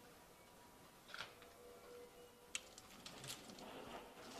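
Near silence broken by a few faint clicks and a soft rustle of tarot cards being handled and laid down on a cloth-covered table.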